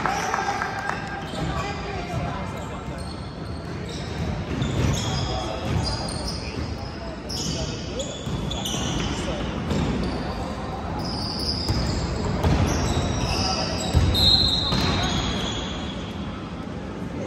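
A basketball bouncing on a hardwood gym court during live play, with repeated thuds, sneakers squeaking and voices calling out, echoing in a large hall.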